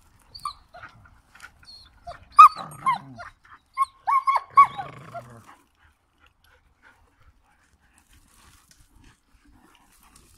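Dogs yelping and whining while playing: a few short, high, falling yelps about two seconds in, then a quicker run of them around four to five seconds in.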